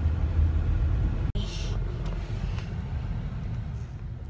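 Low, steady rumble of a car heard from inside the cabin, the road and engine noise of a car being driven. It drops out abruptly for an instant about a second in, then carries on with a brief hiss.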